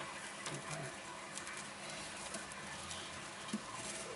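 Fat-tailed gerbils moving about in hay bedding: faint rustling with scattered small crackles and clicks.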